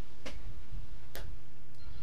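A short pause in a talk-radio recording: a steady low background hum with two faint, short clicks about a second apart.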